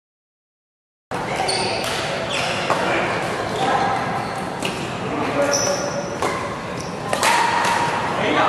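Badminton rackets hitting a shuttlecock in a doubles rally, sharp cracks a second or two apart, starting about a second in. They echo in a large hall, over players' voices.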